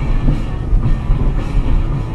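Steady low rumble of a car's cabin at highway speed, with rock music playing underneath.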